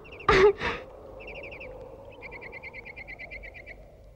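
A brief vocal exclamation or sigh just after the start, then a bird chirping in rapid, evenly repeated short notes, about eight a second, over a faint background hiss.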